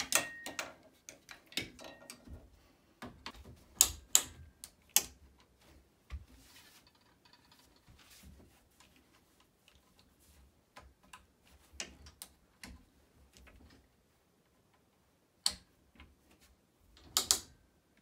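Scattered clicks and clunks of a long-arm quilting frame being handled, with the frame's ratchet handwheel turned to move the quilt. The clicks come irregularly, several close together about four to five seconds in and again near the end.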